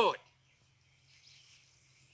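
A pause in a man's speech: his last word cuts off just at the start, then near silence with only a faint, high outdoor background hiss that swells slightly about a second in.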